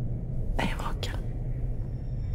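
A short, breathy whisper, two brief puffs about half a second and one second in, over a low, steady drone.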